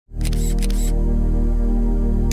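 Intro music holding a steady low chord, with a camera shutter sound effect near the start: a half-second burst of rapid clicks.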